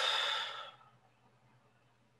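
A person's breathy exhale, like a sigh, fading out within the first second, then near silence.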